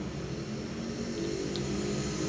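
Low, steady engine-like hum that grows slightly louder, with a couple of faint small ticks partway through.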